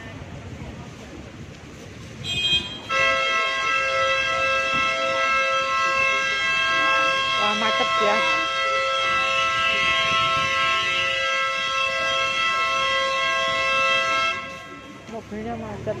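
A two-tone vehicle horn gives a short toot and then sounds without a break for about eleven seconds before cutting off, over street noise.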